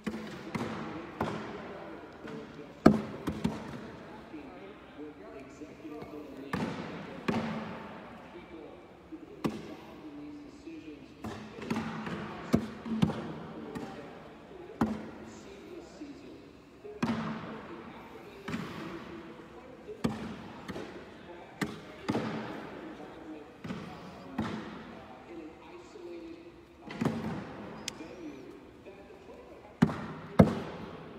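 Cornhole bags thudding one after another onto wooden cornhole boards, a hit every second or two, echoing in a large gym hall, with voices murmuring in the background.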